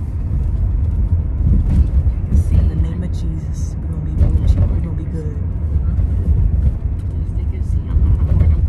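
Steady low road rumble inside a moving car's cabin.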